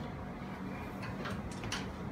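A few faint metallic clicks of a spanner working a clamp nut on a steel support foot, over a steady low hum.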